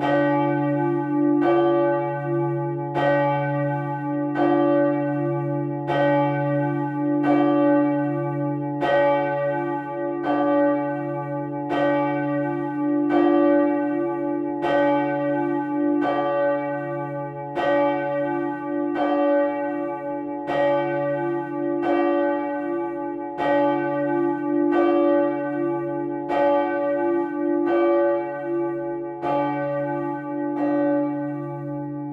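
A single swinging church bell, its clapper striking steadily about once every one and a half seconds. Each stroke rings on into the next over a sustained low hum.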